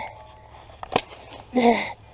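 A single sharp strike of a machete blade on a small pine sapling about a second in, followed near the end by a short vocal grunt.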